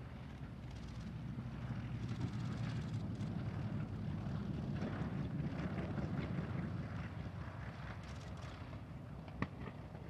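Twin radial engines of a North American B-25J Mitchell bomber running at moderate power as it moves along the runway, swelling in the middle and then easing off, with wind on the microphone. A single sharp click comes near the end.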